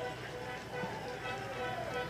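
Faint football stadium ambience: distant voices and music in the background.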